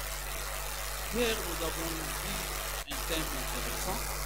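Steady low hum and hiss under a pause in a man's sermon, with a faint, brief murmur of his voice a little over a second in and a momentary dropout near three seconds.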